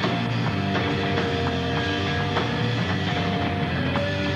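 Live stoner rock band playing an instrumental passage: electric guitars hold long sustained notes over bass and a steady drum beat.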